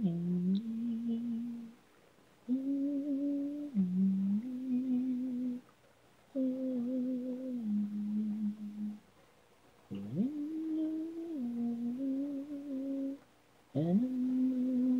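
A single low voice humming a slow a cappella melody in held notes that step up and down in pitch, in phrases of two to three seconds with short pauses between them.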